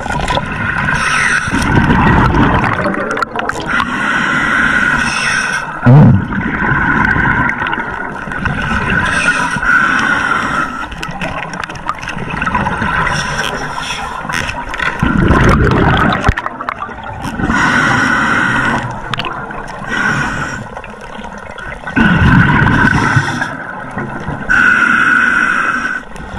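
Scuba diver breathing underwater through a regulator: a hissing inhale alternates with a low rumble of exhaled bubbles every few seconds. A short loud vocal sound comes about six seconds in.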